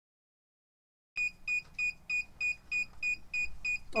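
A Heat Press Nation mug press's digital controller beeping its end-of-cycle alarm, short high beeps about three a second, starting about a second in. The timer has run out and the sublimated mug is done pressing.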